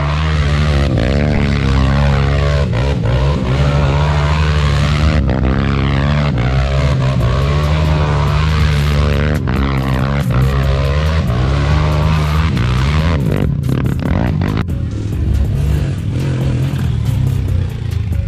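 Yamaha YFZ450R single-cylinder four-stroke ATV engine with an aftermarket HMF exhaust, revved hard and repeatedly as the quad spins donuts in sand, the pitch rising and falling with the throttle. After about 13 seconds the revving stops and the engine settles to a lower, steadier running.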